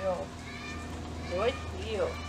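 Three short, rising, squeaky vocal calls: one at the start, one about a second and a half in, and one near the end, over a steady low hum.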